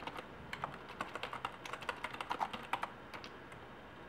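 Computer keyboard being typed on: a quick, uneven run of keystrokes that thins out to a couple of single taps after about three seconds.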